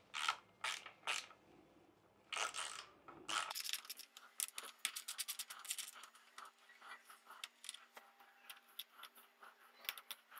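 Ratchet handle with a size 6 Allen bit backing out the bolts of a motorcycle's pillion seat: a few scraping strokes, then from about three seconds in a long run of rapid ratchet clicks that thins out toward the end.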